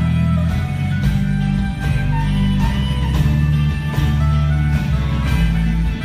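Live band with electric guitars and drums playing an instrumental passage, with steady bass notes underneath.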